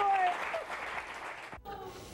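Studio audience applauding, fading out over the first second and a half, with a few voices over it; the sound then cuts off abruptly.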